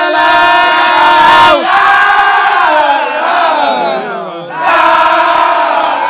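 A crowd's voices shouting and chanting together, loud, in long held phrases that break off briefly about a second and a half in and again just past four seconds before resuming.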